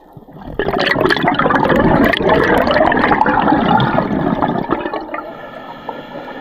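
Scuba diver breathing out through a regulator underwater: a loud burst of exhaust bubbles starts about half a second in, lasts about four seconds, then fades.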